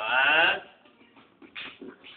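A short, wavering vocal call lasting about half a second at the start, followed by faint scattered knocks and rustles.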